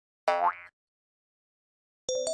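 A short cartoon sound effect dubbed onto the video: a pitched tone that slides upward in pitch, lasting about half a second and starting about a quarter second in.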